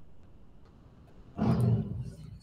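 A few faint keyboard clicks, then about one and a half seconds in a man's short, low vocal sound, like a hum or grunt.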